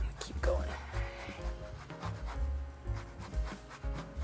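Microplane grater rasping against lemon peel in repeated strokes, with soft background music underneath.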